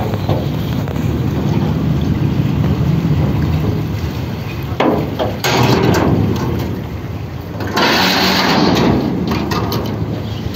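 Steady low rumble aboard a river car ferry. Two louder rushing passages come about five seconds in and again about eight seconds in.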